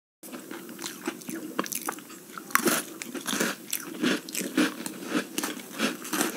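Close-miked ASMR eating sounds: crisp bites and crunchy chewing, a dense, irregular run of sharp crunches.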